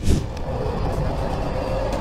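Steady road and engine noise of a car driving on a highway, heard from inside the car. It begins with a sudden rush of noise.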